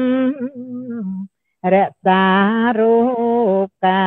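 A woman singing an unaccompanied chant, slow and drawn out, with long held notes that waver in pitch. The singing breaks off briefly about a second in and again near the end for breaths.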